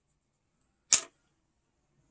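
A single sharp click about a second in: a small metal eyeshadow pan clicking down against the magnetic Z palette. Otherwise near silence.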